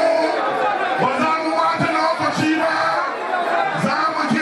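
A large crowd's voices: many people talking and calling out at once in a steady, loud babble.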